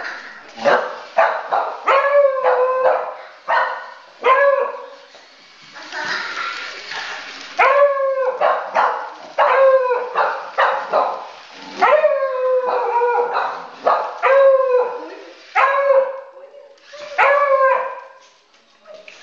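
Dogs barking over and over in quick runs of several barks with short pauses, each bark dropping in pitch.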